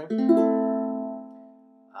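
An A minor chord strummed on a ukulele and left to ring, fading out over about a second and a half.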